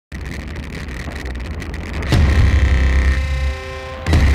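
Electronic intro music. Heavy deep bass and held synth tones come in sharply about halfway through.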